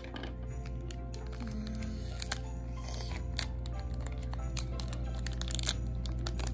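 Foil snack-style wrapper crinkling and tearing in small scattered crackles as it is pulled open by hand, under soft background music.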